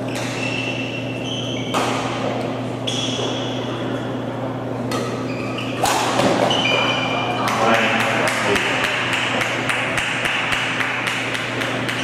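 Badminton rally on an indoor court: sharp racket strikes on the shuttlecock, the hardest being a smash about halfway through, with short high squeaks of shoes on the court floor. After the smash, spectators clap and the applause carries on to the end, over a steady hum of the hall.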